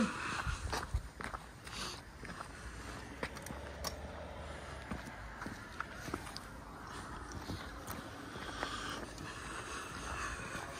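Footsteps and handling noise of people walking, with scattered light clicks and knocks.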